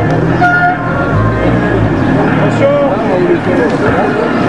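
A car drives past close by, its low engine rumble swelling about a second in, under indistinct loudspeaker voices and music.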